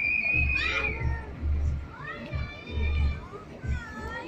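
A young child's high-pitched squeal, held for about a second at the start, followed by more short high squeals and child voices.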